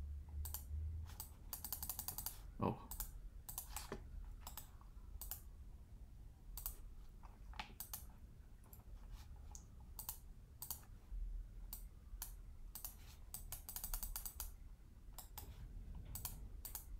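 Scattered clicks of a computer keyboard and mouse, with two quick runs of rapid key taps, about two seconds in and again near the end. A short rising murmur of a voice comes about three seconds in.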